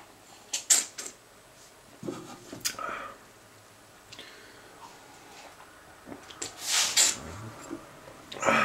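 A person tasting beer from a glass: a few short slurping sips and breaths, then a longer, louder breath near the end.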